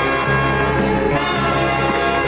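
Film score music with sustained brass chords that change about once a second.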